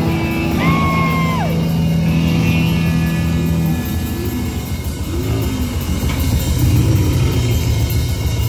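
Live rock band playing: electric guitars through amplifiers with a drum kit, a high held note sliding down about a second in.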